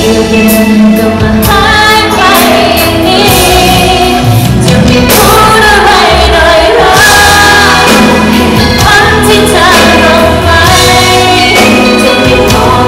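A woman singing a pop song live into a microphone, backed by a band with electric guitar and a backing vocalist, loud and continuous.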